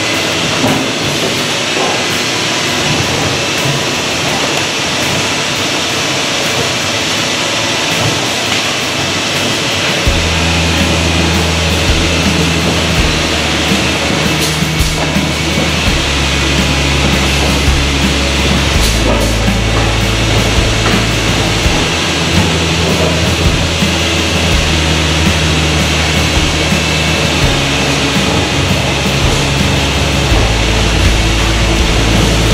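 Steady machinery noise from a running vacuum veneer stacker in a factory. About ten seconds in, background music with a deep bass line, held notes changing every few seconds, comes in over the machine noise.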